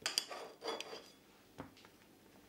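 Table knife clinking and scraping on a china plate as butter is cut, then scraping butter onto a slice of bread. A few faint, short clicks and scrapes; the first, right at the start, rings briefly.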